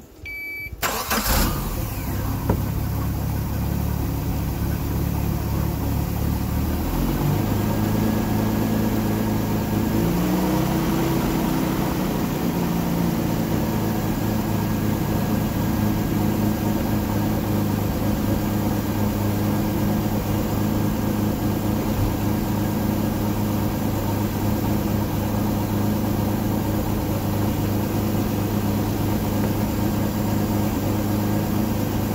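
A short alarm beep at key-on, then the Volvo Penta 4.3GL V6 marine engine starts about a second in. It runs fast at first, shifts speed between about 7 and 12 seconds in, and then idles steadily.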